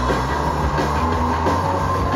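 Rock band playing live at full volume: distorted electric guitars and drums in a dense, unbroken wash, with a steady held high note running through.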